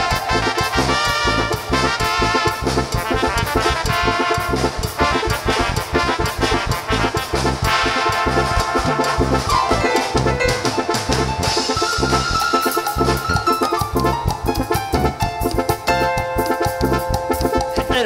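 Tierra caliente band playing an instrumental passage live, with keyboards carrying a brass-like melody over electric bass and a drum kit keeping a steady, fast beat.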